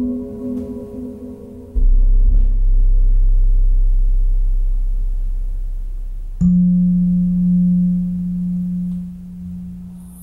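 Ambient music played through Cerwin Vega XLS15 floor speakers and a CLSC12S subwoofer. A very deep held bass note comes in suddenly about two seconds in and slowly fades. About six seconds in, a higher held tone takes over.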